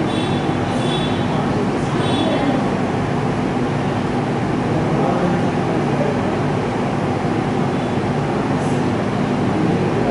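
Steady, loud rumbling noise with a low hum under it, unchanging throughout. Faint high-pitched sounds come and go in the first two seconds.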